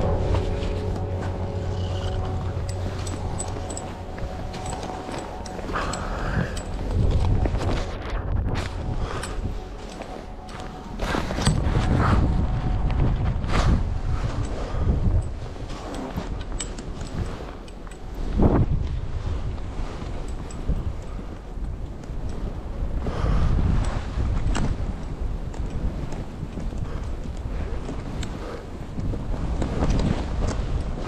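Skis running and turning through deep powder snow, a rushing hiss that surges with each turn, with wind buffeting the chest-mounted action camera's microphone and occasional knocks and thumps.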